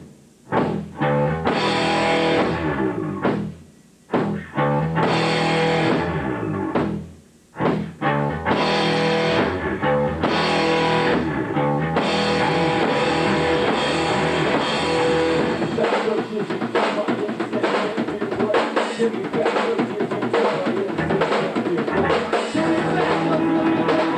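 A live rock band of electric guitar, bass guitar and drum kit playing. For the first several seconds the band hits together and cuts off, leaving short gaps. After that it plays on without a break, fuller, with cymbals, from about halfway through.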